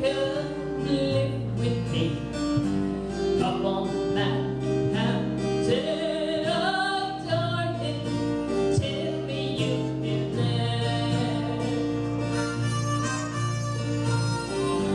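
Acoustic guitar playing an instrumental break in a live folk song, with a melody line over steady bass notes; a harmonica comes in near the end.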